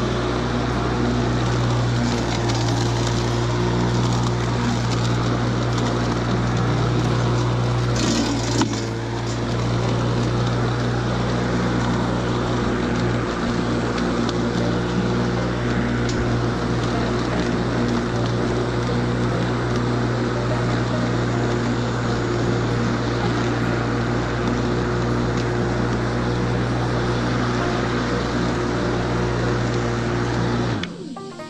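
Electric walk-behind rotary lawn mower running steadily while cutting dry grass: a constant motor hum under the rush of the spinning blade. There is one sharp knock about eight seconds in.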